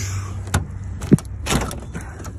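Door of a VW Vanagon being opened by hand: three sharp clunks and clicks of the latch and hinge in quick succession, the loudest about a second in, over a steady low hum.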